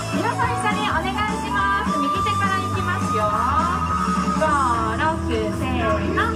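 Pop song with a singing voice over a steady bass line, played over a loudspeaker for a pom-pom dance routine; the voice holds one long note in the middle.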